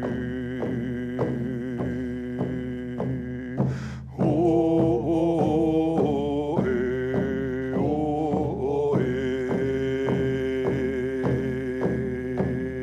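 Men singing a First Nations song together while beating hide-covered hand drums with beaters in a steady beat, about three strokes a second. About four seconds in, the song stops briefly, then comes back louder.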